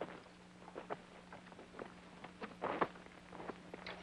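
Faint, irregular footsteps and scuffs on rock and loose stones as a man clambers down a rocky ledge, with a steady low hum in the old soundtrack underneath.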